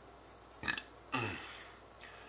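A man's short mouth noise, then a brief low grunt that falls in pitch.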